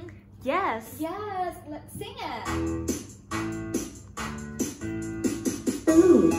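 A brief voice, then from about two seconds in a recorded children's phonics chant for the long vowels -ube, -ute, -une, -ule begins, with instrumental backing and a regular beat.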